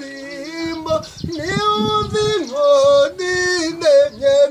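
A man singing a traditional Kinyarwanda song in a high voice without instruments, holding long notes with a short break about a second in. Some low thumps sound under the singing in the middle.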